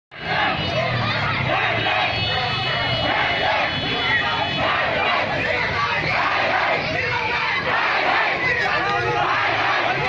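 A large celebrating crowd of marchers shouting together, many voices overlapping in a steady, dense mass.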